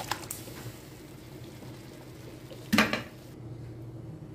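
Metal spatula knocking against a cooking pan: a few light clicks near the start and one loud clatter about three seconds in, over a steady low hum.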